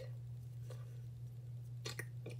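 Steady low hum with two faint, short clicks of hands handling small objects, a weak one partway through and a clearer one near the end.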